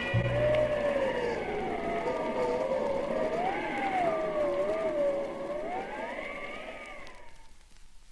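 Eerie wailing sound, a few tones gliding slowly up and down together like a ghostly moan, fading out near the end.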